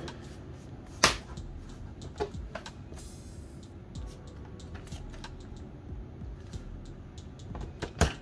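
Bottom cover of an Eluktronics MECH-17 G1Rx laptop being pressed shut around its edges, its clips snapping into place: one sharp click about a second in, then a scatter of smaller clicks and taps.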